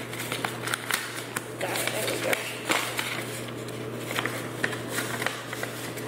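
Paper rustling and crinkling as a folded paper wrapper and envelope are worked open by hand, with many small irregular crackles and clicks, over a steady low hum.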